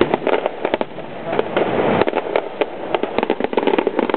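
Fireworks going off in rapid succession: many sharp pops and crackles of bursting shells, coming thickest in the second half.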